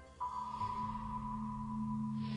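A synthesized electronic tone, like a sonar ping, starts suddenly about a fifth of a second in and holds steady and high over a low sustained drone.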